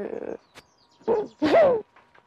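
A woman crying: a ragged, breathy sob at the start, then a drawn-out wail about a second in that falls in pitch.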